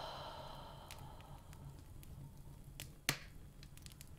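A slow, soft breath out that fades away over the first second and a half, followed about three seconds in by a short mouth click, over a faint low hum.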